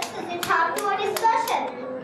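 A child's voice speaking, with about six sharp claps or taps scattered among the words.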